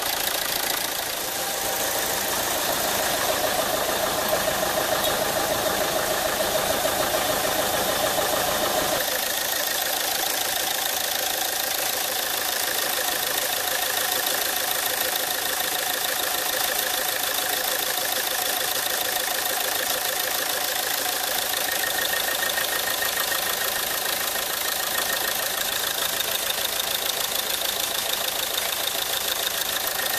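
Volvo V50's 2.0-litre four-cylinder turbodiesel idling steadily, heard close up under the bonnet. It is being run just after a fuel filter change to purge air bubbles still in the fuel system. The sound shifts about nine seconds in, losing some of its low rumble.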